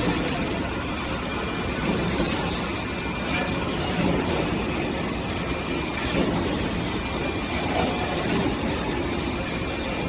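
Steady, even noise of machinery running on a fire extinguisher cylinder inner-painting line, with no distinct strokes or changes.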